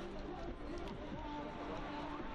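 Indistinct chatter of a small group of people talking among themselves, over a steady low background noise.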